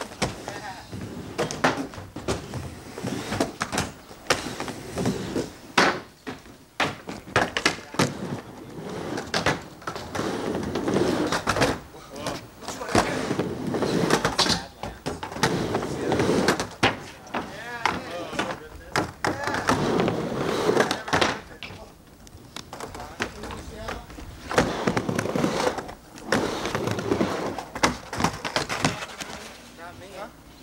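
Skateboard riding a mini ramp: wheels rolling back and forth on the ramp surface, with many sharp clacks of trucks and board hitting the coping and deck.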